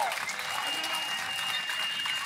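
Crowd of wedding guests applauding the couple's kiss, with a few voices among the clapping. A thin steady high tone runs under the applause.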